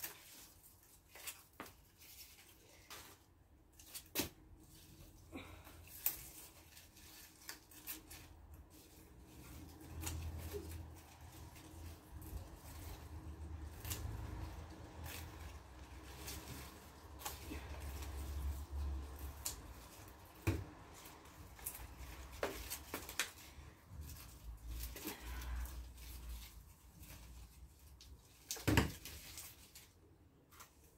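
Scissors snipping Swiss chard stalks: scattered sharp clicks of the blades closing, with a louder snap near the end. A low rumble comes and goes through the middle.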